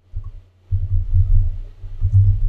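Low, dull rumbling thumps from typing on a computer keyboard, carried through the desk into the microphone: a short knock near the start, then an uneven run of thumps from about two-thirds of a second in.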